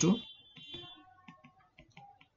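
A few light, sharp clicks from a stylus tip tapping on a pen tablet while handwriting. A brief spoken word comes just at the start.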